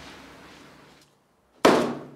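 A single sharp knock about one and a half seconds in, from a wooden butter mould struck down on a metal worktable, with a short ringing tail.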